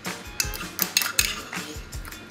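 Metal cutlery scraping and clinking against a small ceramic ramekin as garlic sauce is scraped out of it: a run of short, sharp clicks and scrapes.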